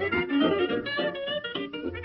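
Instrumental background music: a lively tune moving quickly from note to note.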